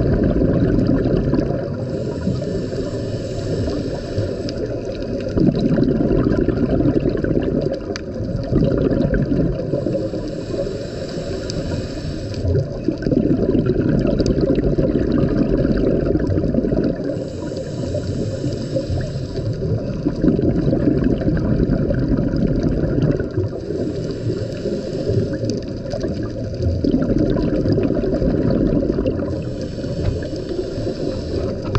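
Scuba regulator breathing heard underwater: a hiss on each inhale followed by a rush of exhaled bubbles, repeating about every seven seconds.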